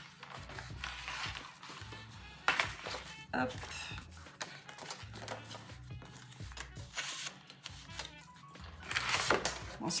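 Sheets of scrapbooking paper rustling and sliding against each other as they are sorted and picked up by hand, with a sharper snap of paper about two and a half seconds in.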